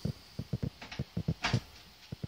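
Soft, irregular knocking and clicking, several a second, with one sharper click about one and a half seconds in.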